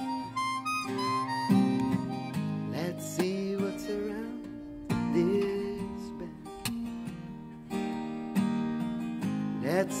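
Instrumental folk passage: a Yamaha acoustic guitar is picked while a harmonica plays a bending melody over it, and singing comes back in at the very end.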